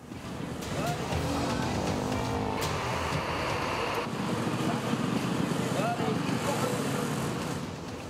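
Street sound at a road-crash scene: traffic and vehicle engines running, with people's voices mixed in.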